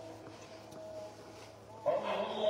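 A pause in the dawn call to prayer (adhan) sung over mosque loudspeakers: the muezzin's voice dies away in echo, leaving a faint thin tone or two. Just before the end his voice comes back in loudly on the next phrase.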